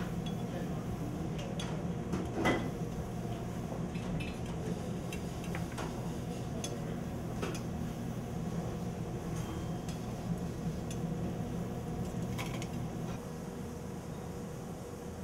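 Occasional light clinks and taps of metal plating tweezers and utensils against a china plate and steel kitchen ware, with one louder clink about two and a half seconds in, over a steady low hum.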